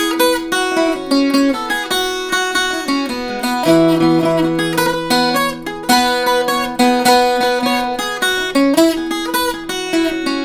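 Irish bouzouki played solo with a pick, running a quick jig melody of single notes over low strings left ringing underneath.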